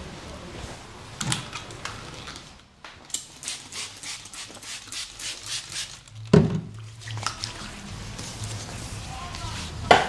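Hands massaging a person's arm and shoulder: a sharp tap, then a run of quick taps at about four a second, a loud thump a little past the middle and another sharp hit near the end.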